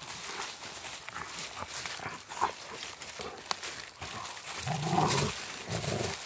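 Two Rottweilers playing over a stick in dry leaf litter: leaves rustle and twigs crack as they chew and tug. A short, low dog growl about five seconds in is the loudest sound, with another brief one near the end.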